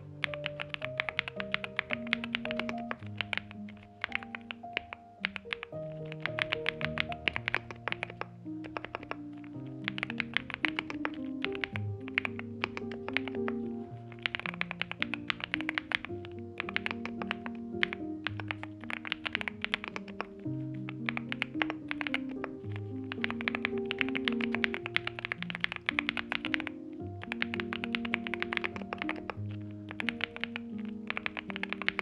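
Typing on a NuPhy Gem80 mechanical keyboard with NuPhy Mint switches on an FR4 plate in silicone-sock gasket mount and Gem mSA double-shot PBT keycaps: quick runs of keystrokes in flurries with short pauses between them. Background music plays underneath throughout.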